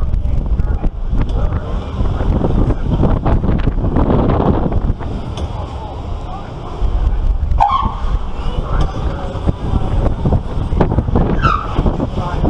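Wind buffeting the microphone on a swinging pirate-ship ride as it swings back and forth, swelling and easing with the swings. Short rider yells come in about two-thirds of the way through and again near the end.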